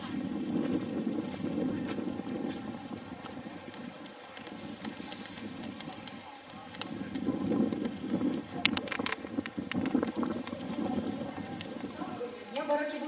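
Wind buffeting the microphone: a low, rumbling noise that swells and eases, with a few sharp clicks about three-quarters of the way through.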